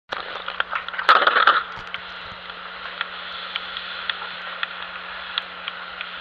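A steady crackling hiss with scattered clicks and a faint low hum, and a brief louder rustling burst about a second in.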